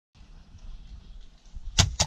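Two sharp airsoft gun shots in quick succession near the end, over low, uneven rumbling noise.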